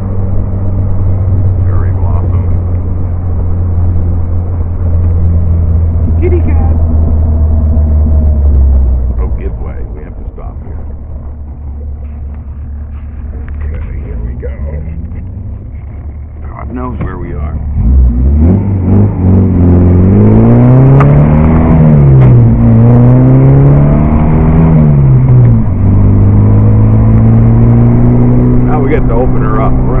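Vintage open car's engine heard from the cockpit: running steadily, then easing off to a lower, quieter note for several seconds while slowing for a junction. About eighteen seconds in it pulls away under load, its pitch climbing and dropping back twice as it changes up, then settles into a steady cruise.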